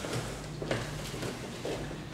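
Faint soft thuds and shuffling of bare feet and knees moving on a foam grappling mat.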